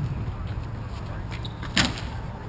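A single sharp crack of a hockey stick striking the ball near the end, over faint shouts of players and a low steady rumble.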